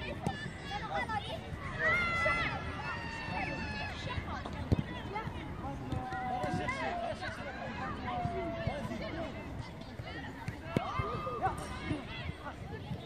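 Children's voices calling and shouting across a football pitch, with a ball kicked sharply once, about five seconds in, as the loudest sound, and a few fainter kicks.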